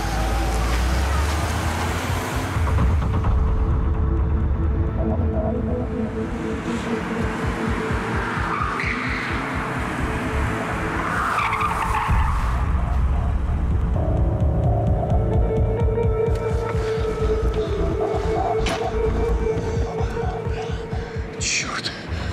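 A Volvo 700-series estate car's engine running hard as the car speeds off, a steady pulsing rumble with tyres squealing around the middle, under a film music score.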